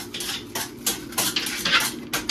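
Thin plastic food bags crinkling and rustling as they are peeled open and pulled off portions of food on a plate, in a quick run of irregular crackles.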